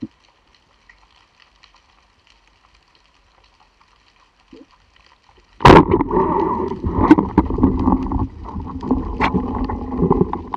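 Underwater speargun shot: faint crackling water ambience, then about halfway through a sudden loud knock. A continuous rushing of water over the camera housing follows, with scattered clicks, as the diver kicks up toward the surface.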